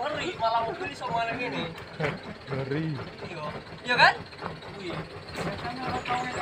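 Men talking and calling out to one another, with a short rising shout about four seconds in, over a faint steady low hum.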